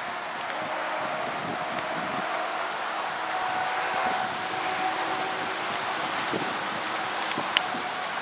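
Steady outdoor background hiss of wind and rustling leaves, with a single sharp click near the end.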